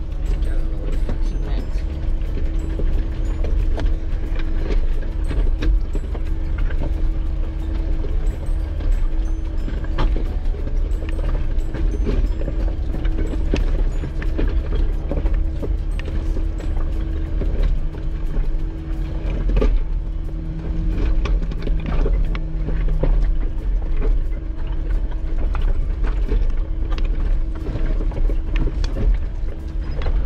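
Jeep Wrangler Rubicon crawling over a loose rocky trail: a low engine drone with a steady hum, under constant rattles and knocks as the heavily loaded rig shakes on the rocks.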